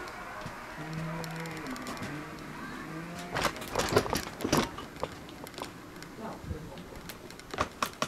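A low, drawn-out vocal moan lasting about two seconds, followed by a cluster of sharp knocks and rattles from a wheelchair being pushed across the floor, with a few more knocks near the end.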